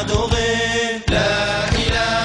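Nasheed: a chorus of voices chanting held, gliding notes over low drum beats, with a short break just before a second in.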